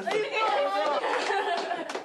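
Several people's voices talking and calling out over one another at once: lively group chatter.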